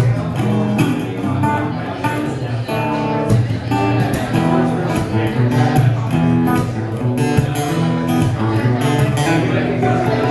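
Solo fingerstyle acoustic guitar played live: plucked melody notes over a steady bass line.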